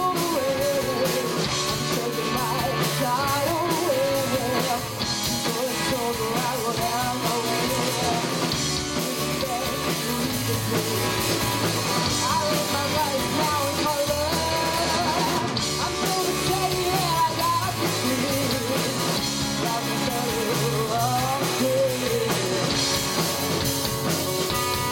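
A live rock band playing, with a woman singing lead over two electric guitars, a drum kit and a keyboard.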